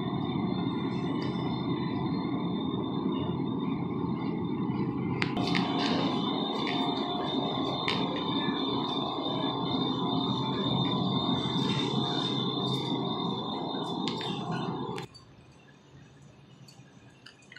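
Steady store background noise with a faint high whine and a few light clicks, cutting off abruptly near the end.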